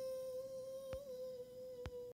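A person humming one long steady note, faint and fading out, with two soft clicks, about a second in and near the end.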